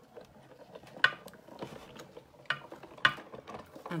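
Sizzix Big Shot die-cutting machine being hand-cranked, with its cutting plates passing through the rollers. It gives a low mechanical rumble broken by about five sharp, irregular clicks and clunks.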